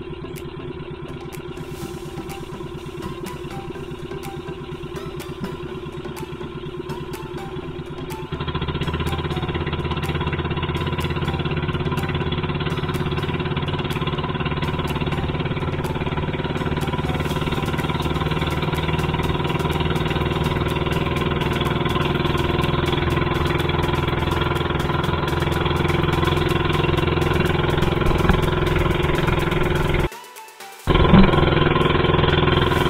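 Small motor of an outrigger fishing boat running steadily while trolling; about eight seconds in it gets louder and deeper, as if throttled up, then holds steady.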